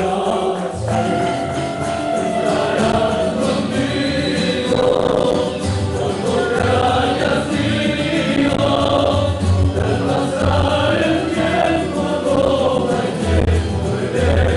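A student tuna performing: a chorus of male voices singing together over strummed guitars and smaller plucked string instruments, with fuller low notes from about a second in.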